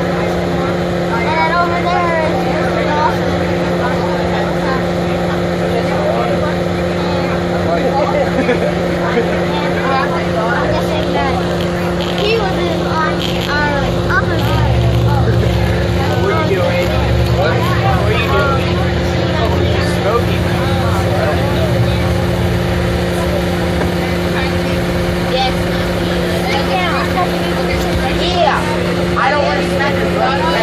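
A school bus's engine running with a steady drone, heard from inside the bus under continual indistinct chatter of passengers; a deeper rumble swells for several seconds around the middle.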